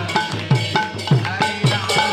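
Kirtan percussion with no singing: a two-headed hand drum in a quick rhythm, its bass strokes dropping in pitch after each hit, with ringing strikes of small hand cymbals (karatalas) on the beats.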